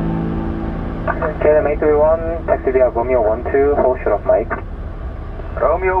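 Air traffic control radio transmissions, thin and cut off in the highs as through a radio speaker: one call from about a second in, a pause, then another starting near the end. A steady low rumble runs underneath.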